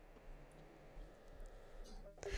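Near silence: a faint steady hiss with a few soft clicks.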